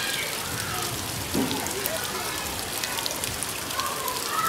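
Steady rain falling on leafy garden plants and wet ground, a dense patter of drops, with faint voices in the background.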